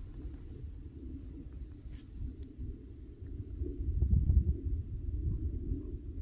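Wind buffeting the microphone: an uneven low rumble that swells about four seconds in, with a few faint clicks.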